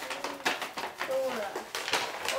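Soft talking voices with light clicks and crackles of a plastic-packaged doll being handled and unwrapped.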